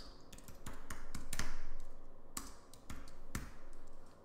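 Typing on a computer keyboard: an irregular run of key clicks and taps as a short phrase is typed.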